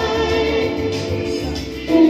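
Live amplified singing over electronic keyboard backing through a PA. The singer holds one long note, then comes in louder on a lower note near the end.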